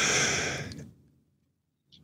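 A person's long, breathy sigh-like exhale trailing off a laugh, fading out about a second in, followed by near silence.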